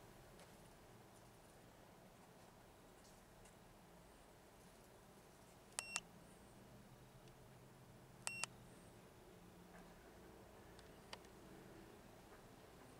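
Two short, high electronic beeps, about two and a half seconds apart, from button presses on a Topdon Plus 2.0 handheld OBD2 scan tool as its menus are stepped through, with a faint click near the end; otherwise near silence.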